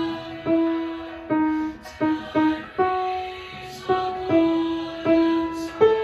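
Grand piano playing the alto line of a church anthem as a slow single-note melody, each note struck and fading, with a few quicker notes about two seconds in.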